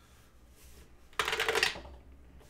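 A 12-sided plastic die clattering down a clear plastic dice tower: a quick rattle of many small clicks a little over a second in, lasting about half a second.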